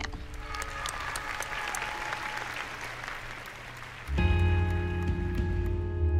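Audience applauding, then about four seconds in a slow music track for the routine starts, with held chords over a deep bass.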